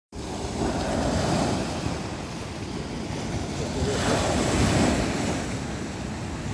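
Sea waves breaking on a pebble beach and washing up the shore, swelling twice, about three seconds apart.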